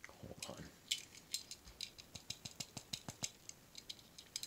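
Fingers and fingernails working at a small diecast toy car, trying to pry open its hood: a string of faint, irregular clicks and light rattles.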